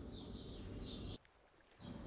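Faint, repeated high chirping of a bird in the background, several short calls in a row. It stops abruptly a little over a second in.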